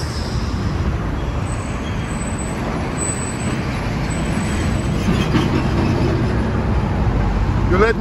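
A city bus running close by amid road traffic: a steady low rumble that grows louder in the second half as the bus pulls in alongside.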